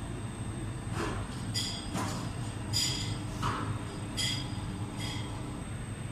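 Steady low workshop rumble with a few light metallic clinks, about four, from the steel blades and tongs held together in the quench-oil bucket.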